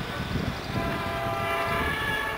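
A distant horn sounding one long, steady chord that comes in about half a second in and holds through the rest, over steady outdoor background noise.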